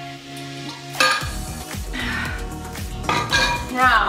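A metal water bottle is set down on a tiled hearth with a sharp clink that rings on briefly, about a second in, over background music with a steady beat.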